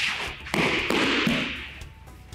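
A person thrown down onto tatami mats, with thumps and a noisy stretch of about a second as the body lands and settles on the mat.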